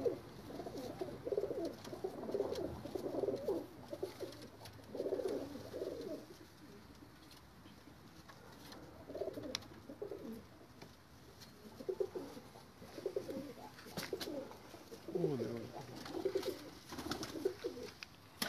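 Domestic pigeons cooing in repeated rolling bursts, with a few sharp clicks.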